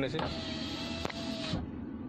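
Renault Kwid rear-door power window motor running as it raises the glass: a steady whine that stops abruptly about one and a half seconds in, with a single click partway through.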